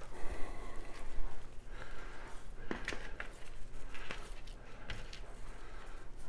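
A plastic spice shaker being shaken over meat: quiet, irregular rattles and light taps of dry rub granules.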